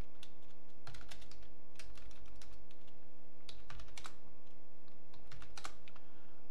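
Computer keyboard typing: scattered key clicks in a few short runs as shell commands are entered, over a steady background hum.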